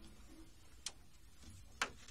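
Two short clicks about a second apart, the second louder, over quiet room tone as the guitar's last note dies away.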